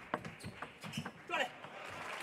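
Table tennis rally: the plastic ball clicking sharply off bats and table in quick succession, with a short shout about a second and a half in.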